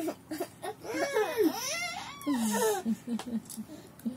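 A young child's high-pitched squeals and laughter while being tickled, ending in a quick run of short laughs about three seconds in.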